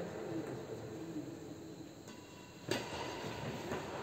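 Echoing sports-hall ambience with faint voices at first, then one sharp smack of a badminton racket striking a shuttlecock about two-thirds of the way in, ringing briefly in the hall.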